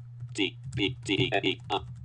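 Typing on a computer keyboard, each keystroke echoed aloud by the Orca screen reader's synthetic voice speaking the letters in quick succession as a web address is entered, over a steady low hum.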